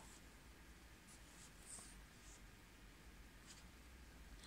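Near silence: room tone with a few faint, brief rustles of a paper sheet being handled.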